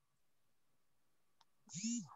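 Near silence on a video call for most of the time, then a faint click about 1.4 seconds in, and a short vocal sound from a person starting near the end.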